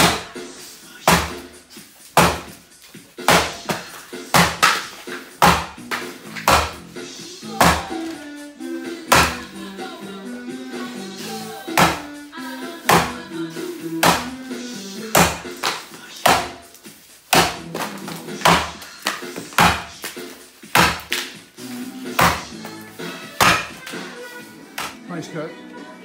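Axe chopping a standing block of dry sycamore, a little over twenty sharp strikes at roughly one a second, until the block is cut through near the end. Background music plays throughout.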